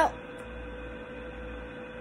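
A steady electrical hum: one constant tone with fainter steady tones above it over a low background rumble.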